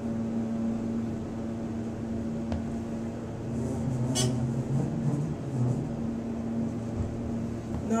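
ThyssenKrupp hydraulic elevator travelling down, a steady low hum in the cab, with a faint tick about two and a half seconds in and a short click about four seconds in.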